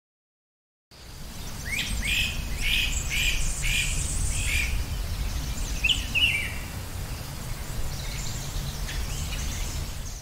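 A songbird calling outdoors, a quick series of about six repeated chirps at roughly two a second, then a short burst of chirps near the middle, over a steady low outdoor rumble. The sound starts after about a second of silence.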